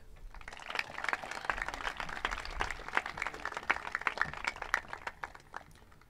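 Audience applauding for a graduate: a dense patter of many hands clapping that thins out and dies away toward the end.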